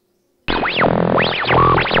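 Short electronic transition jingle: synthesizer tones sweeping up and down in quick arcs over a sustained low chord, starting about half a second in.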